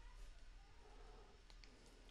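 Near silence: faint room tone with a low hum, and a couple of faint clicks about one and a half seconds in.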